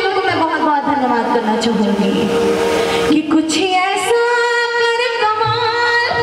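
A woman singing a Bhojpuri stage song live into a microphone over a stage sound system, with musical accompaniment. Her voice glides down over the first two seconds, and steady held notes follow from about four seconds in.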